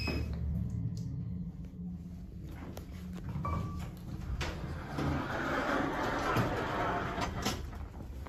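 Elevator car doors sliding open, a rushing run of noise about two seconds long that starts about five seconds in and ends with a click. A short beep and a click come just before it, over a steady low hum from the car.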